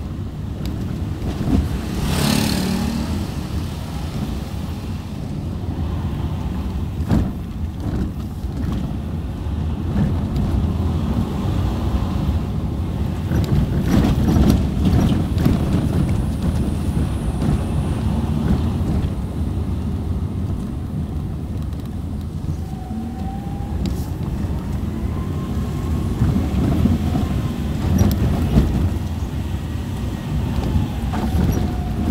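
Car engine and road noise heard from inside the cabin while driving slowly on a rough, narrow road, a steady low rumble with a few knocks.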